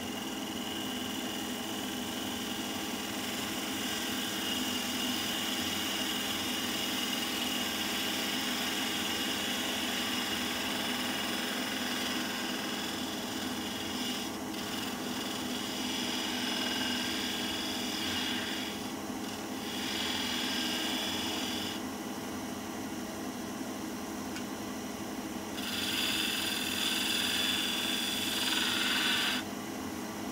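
A detail gouge cutting a spinning maple blank on a wood lathe: a steady hiss of the cut over the lathe's motor hum. The cut breaks off a few times as the tool eases away, is loudest near the end, then stops.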